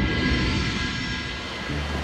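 Swelling end-of-episode music sting with a rushing, whooshing quality; it peaks about a quarter second in and holds, and a low steady drone joins near the end.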